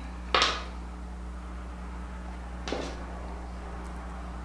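Plastic primer bottle being opened and handled: a short, sharp noisy burst about a third of a second in and a softer one near three seconds. A steady low hum sits underneath.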